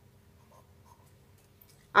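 Faint sound of a pen writing a short word on notebook paper.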